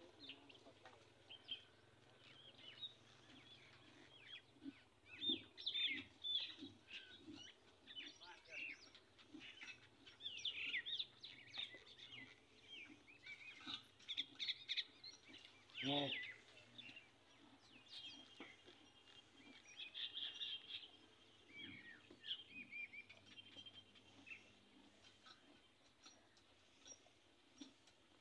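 Small birds chirping faintly and repeatedly, in many short calls. A single spoken word comes about sixteen seconds in.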